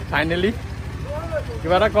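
People's voices over a steady low engine hum that pulses evenly.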